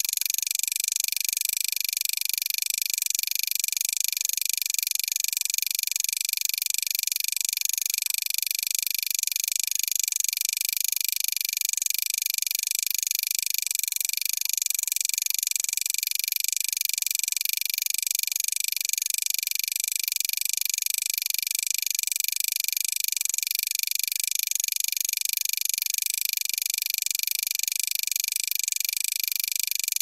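Steady high-pitched hiss with faint steady whining tones, unchanging throughout.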